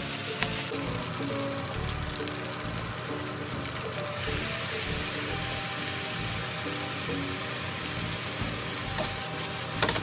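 Curry fried rice sizzling in a frying pan as it is stir-fried with a wooden spatula, with a couple of sharp knocks near the end.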